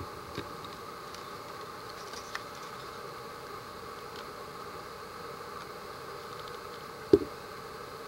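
Light clicks and knocks of a hard plastic 3D-printed prop blaster being picked up and turned over in the hands, with one sharp knock about seven seconds in, over a steady background hiss.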